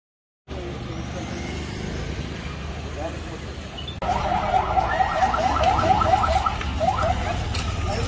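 Outdoor street noise with a steady low hum. About halfway in, the sound jumps louder and a rapid run of short rising chirps starts, about six a second. It comes and goes, in the manner of an alarm.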